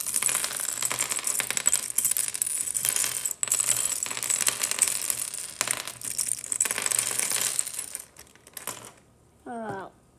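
Small plastic pieces of a magnetic 4x4 speed cube clicking and clattering rapidly as the cube is pulled apart by hand and the pieces are dropped onto a wooden table. The clatter stops about eight seconds in, and a brief voice sound follows near the end.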